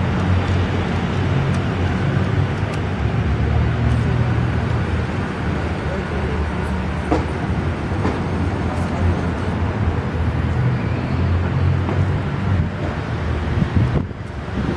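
Busy street ambience: a steady rumble of road traffic with the voices of people around and a few scattered clicks.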